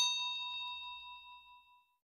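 A single bright bell ding, the sound effect for a notification bell, struck once and ringing out with several clear tones, fading away over nearly two seconds.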